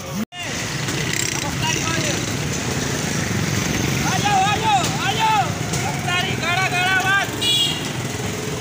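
Busy roadside-stall noise with a steady traffic rumble. From about four seconds in, a man calls out loudly in repeated sing-song phrases, like a street vendor hawking drinks. The sound drops out for a moment just after the start.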